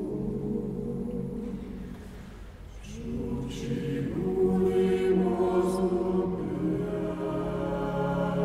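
Mixed choir singing a slow Latvian lullaby a cappella in held chords. The sound thins and drops about two seconds in, then swells fuller again, with a few soft sung 's' consonants.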